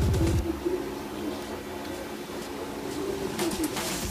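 Background music with a beat stops just after the start, leaving low, wavering cooing calls of a bird over a steady hum.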